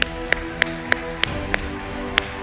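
One person's hand claps: six sharp claps at about three a second, over held chords from the music behind the sermon.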